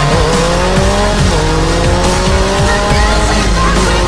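Sportbike engine accelerating under heavy wind rush, its pitch rising steadily, dropping about a second and a half in, then climbing again. Music plays over it.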